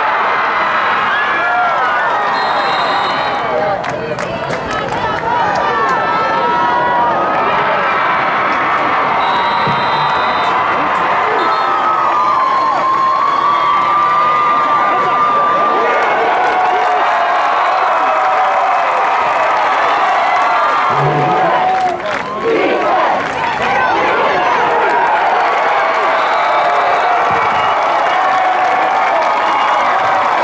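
Crowd cheering and shouting, many voices overlapping, with a couple of brief lulls.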